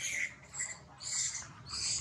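About four short, high-pitched animal calls, each a few tenths of a second long and evenly spread.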